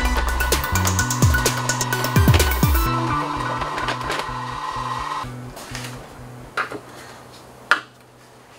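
Electronic background music with a drum beat and a stepping bass line, fading out about five seconds in; two short sharp clicks follow near the end.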